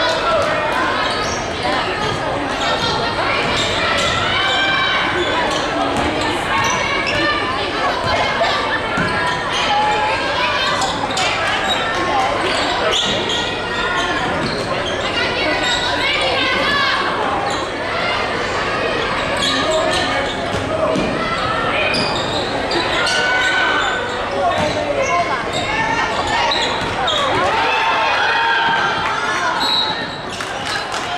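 A basketball game on a hardwood gym floor: the ball bounces in repeated knocks while voices from players and crowd call out, carrying in the large hall.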